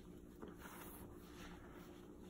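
Faint soft rubbing of a microfiber towel wiping saddle-soap lather off a leather boot, over a low steady hum.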